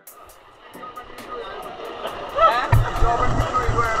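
A quiet murmur at first, then people talking with music playing under them, its bass beat coming in about two and a half seconds in.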